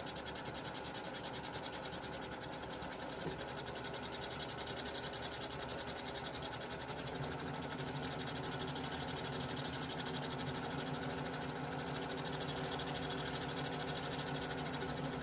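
Sewing machine's bobbin winder running steadily, winding thread onto a bobbin; the motor hum grows a little louder and fuller about halfway through.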